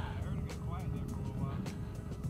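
Faint voices, with the tail of a laugh at the start, over background music and a low rumble; no motor is clearly heard.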